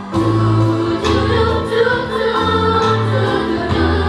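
A musical-theatre song: a group of voices singing together over an instrumental accompaniment, with a low bass line that steps to a new note about every second.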